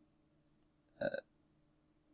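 Near silence, broken by one short, quiet hesitation sound "uh" from a man about a second in.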